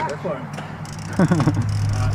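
Brief bits of a man's voice over a steady low hum.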